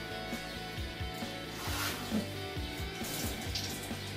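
Water splashing in a kitchen sink as dishes are washed, under background guitar music.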